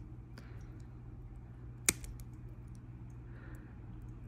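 Pliers and a metal jump ring being handled while threaded through rubber O-rings and beads: a few faint light ticks and one sharp click about two seconds in, over a steady low hum.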